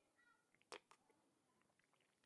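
Near silence: room tone with one soft click about three quarters of a second in and a few faint, brief pitched sounds.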